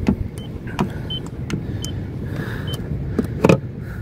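A TC-777 paint thickness gauge gives four short high beeps, one each time its probe is pressed to the car's painted body panel to take a coating reading. Light clicks of the probe against the paint come with them, and a brief louder knock comes near the end.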